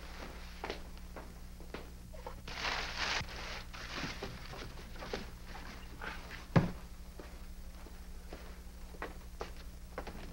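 Footsteps and the handling of a large cardboard box: a rustle of cardboard about a third of the way in and a single sharp thump just past halfway, over a steady low hum.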